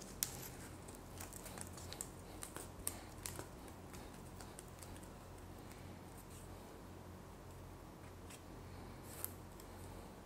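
Faint handling sounds of thread being wrapped and pulled tight around the wire base of fabric flower petals: a scatter of small clicks and rustles in the first few seconds and one more near the end, over a low steady hum.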